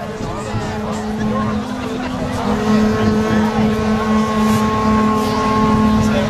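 Medieval bagpipes holding a steady drone with sustained higher notes that come in strongly about two and a half seconds in, over a shouting and cheering crowd.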